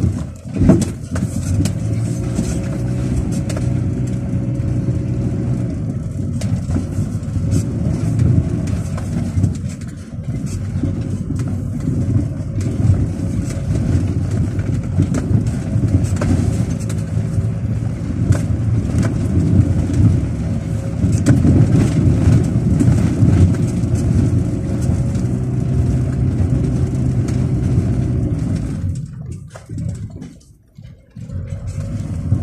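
Car engine running as it drives slowly over a rough dirt track, heard from inside the cabin, with frequent knocks and rattles from the bumpy ground. The sound drops away just before the end.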